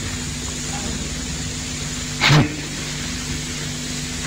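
Steady low hum and hiss of the recording's background during a pause in a man's sermon, with a brief vocal sound from him a little over two seconds in.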